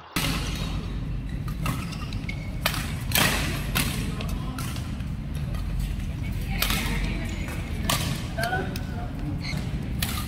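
Badminton rackets striking a shuttlecock in a doubles rally: a series of sharp smacks, spaced irregularly about a second apart, over a steady low rumble.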